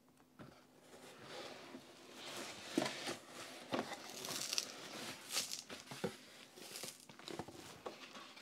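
Cardboard packaging handled by hand: the flaps and a cardboard product sleeve rustling, scraping and lightly knocking, sparse at first and growing busier after about two seconds.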